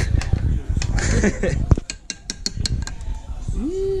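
Metal spoon knocking and clinking against a ceramic baking dish while mixing a thick beer batter, with several sharp clinks in the middle, amid laughter and a short voiced sound near the end.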